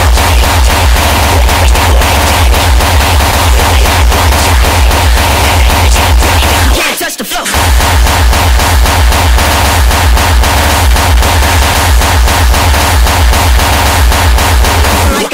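Uptempo hardcore electronic music from a DJ set, with a fast, hard, pounding kick drum. The kick drops out briefly about seven seconds in, then comes back.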